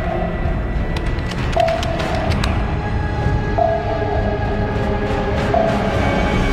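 Tense suspense background score: a low rumble with a short held note repeating about every two seconds.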